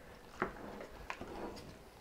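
Wooden spoon stirring a thick, wet mixture of beans and sausage in a pot: faint soft stirring with a few light clicks, the clearest about half a second in and another about a second in.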